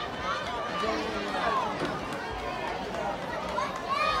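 Indistinct chatter of many overlapping voices from a sideline crowd of spectators, with no single clear speaker.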